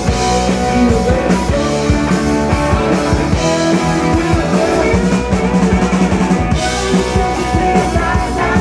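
Live rock band playing an instrumental stretch of a song, with electric guitar, keyboard piano and a drum kit keeping a steady beat.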